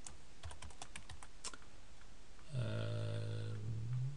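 Computer keyboard typing: a quick run of keystrokes over the first second and a half. Then a man's long, level-pitched hesitation sound, a held "uhh", for about a second and a half near the end.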